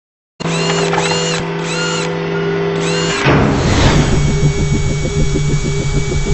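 Produced logo-intro sound effects: a steady mechanical whir with four repeated rising-and-falling whines for about three seconds, then a whoosh into a fast, even pulsing beat.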